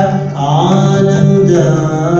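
Male Carnatic vocalist singing in raga Darbari Kanada, holding and bending notes with gliding ornaments, including a rising glide about half a second in, over a steady drone.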